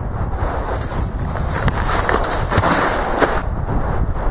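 Wind buffeting the microphone, with a louder stretch of rustling and handling noise in the middle as the camera is turned.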